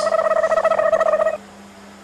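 A pitched buzzing tone that pulses rapidly, lasting a little over a second and cutting off suddenly, over a steady low hum.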